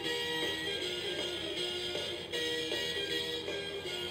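Electronic Bucky pirate-ship toy playing a simple jingle through its small speaker: a stepping melody of clear, even notes.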